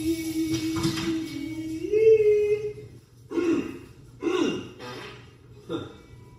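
A voice hums one long held note that steps up in pitch about two seconds in and wavers there, then three short vocal sounds follow.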